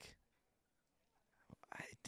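Near silence in a pause between speech, with a faint click and a brief soft sound just before talk resumes.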